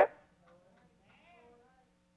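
A faint voice calling out briefly from the congregation in the preacher's pause, over a low steady electrical hum.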